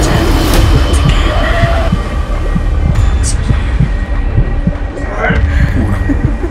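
Horror-film sound design: a dense, loud, low throbbing rumble with a heartbeat-like pulse running through it.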